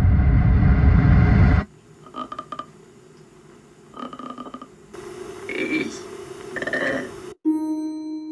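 Horror trailer soundtrack: a loud low rumble cuts off suddenly about a second and a half in. Quiet follows, with faint, broken voice-like sounds. A held musical tone starts near the end.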